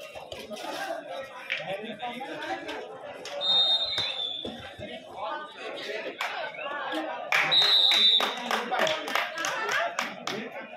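Referee's whistle blown in two short blasts, one a few seconds in and another near the end, over crowd voices and chatter. A burst of hand clapping comes with the second blast.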